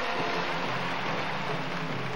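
Large arena crowd cheering and applauding in a steady roar of noise.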